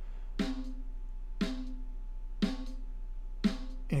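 Recorded snare drum track played back solo, one hit about every second, each hit followed by a low ringing overtone made loud by a narrow EQ boost of about 16 dB. The boost is being swept to pin down the snare's problem resonance, the annoying ringing 'woom' that the engineer cuts out in the mix.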